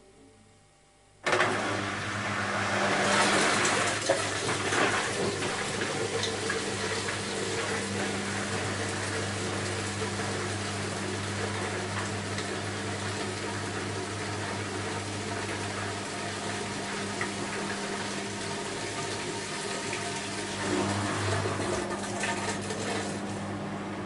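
Beko WMY 71483 LMB2 washing machine starting up again about a second in after a pause: water rushing and sloshing in the drum over a steady low hum, going on steadily after the start.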